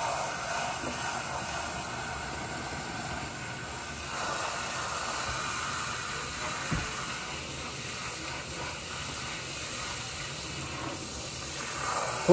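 Water spraying steadily from a sink hose sprayer onto a lathered head of hair, rinsing out shampoo.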